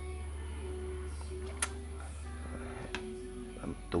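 Faint music playing in the background over a steady low hum, with two light clicks of the plastic sprouter trays being handled, one about one and a half seconds in and another about three seconds in.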